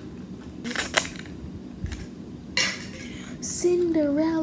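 Small plastic toy packaging being handled and opened: short bursts of crinkling and clicking, about a second in and again in the second half.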